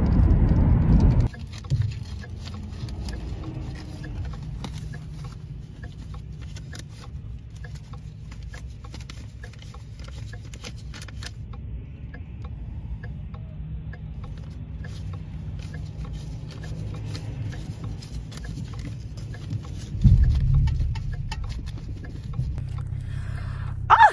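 Vehicle cabin noise: loud low road noise from driving for about the first second, then a quieter steady low engine hum with faint scattered ticking. A louder low rumble swells about twenty seconds in.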